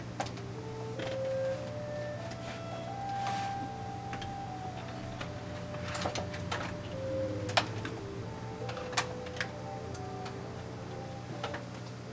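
Faint music from a test audio file playing through a small computer speaker: a melody of short held notes over a steady low hum. Now and then there are sharp clicks from cables and connectors being handled.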